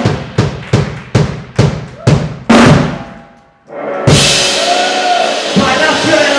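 Live rock band with drum kit and bass guitar playing a run of loud accented hits, about two and a half a second. The last hit rings out and fades into a short break, and the full band comes back in about four seconds in.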